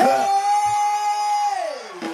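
A man's voice, amplified through a stage microphone, holds one long high sung note that slides down about an octave near the end.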